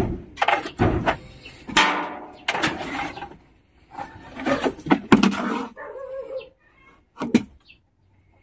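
Wooden planks and boards being shifted and knocked together, with a long metal snake hook scraping and tapping among the lumber: a run of sharp knocks and scrapes with short pauses between.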